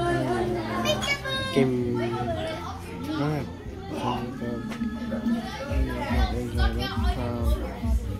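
Voices talking over music, with a steady bass beat that comes in near the end.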